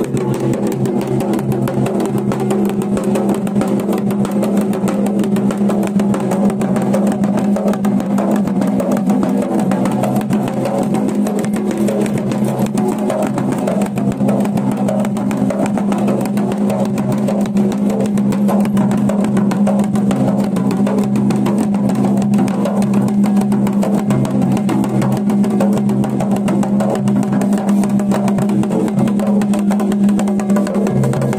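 Dhol drum beaten in a rapid, unbroken rhythm, over a steady low hum.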